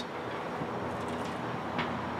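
Steady outdoor background noise with a faint low hum and no distinct events.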